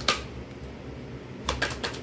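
Tarot cards being shuffled by hand: a quick flurry of papery clicks at the start and again about a second and a half in, over the low steady hum of a fan.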